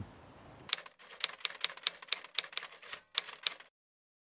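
Typewriter key clicks, a quick, slightly irregular run of sharp taps, several a second, lasting about three seconds.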